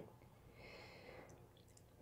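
Near silence, with a faint, soft breath lasting under a second, starting about half a second in.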